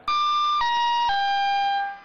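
An electronic chime of three held tones stepping down in pitch. The first lasts about half a second, the second a little less, and the last is the lowest and longest.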